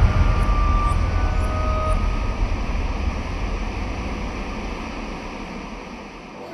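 Steady rumbling hiss that fades out gradually, with two faint held tones in the first two seconds.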